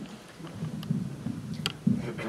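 Low rumbling handling noise from a camcorder being swung round, under faint murmured voices, with two light clicks, one about a second in and one near the end.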